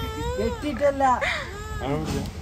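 Toddler crying, a run of wavering cries one after another.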